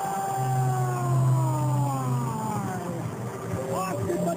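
Hockey arena goal horn sounding for about two seconds to mark a goal, under a long drawn-out shout that slowly falls in pitch.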